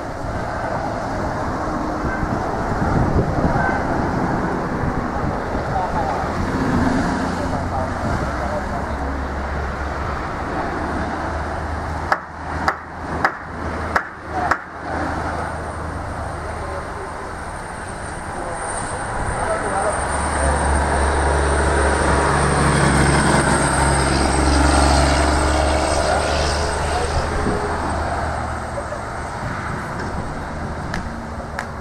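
Steady low rumble of road traffic with voices in the background, swelling louder for several seconds in the second half. About midway the sound drops out briefly several times, between a handful of sharp clicks.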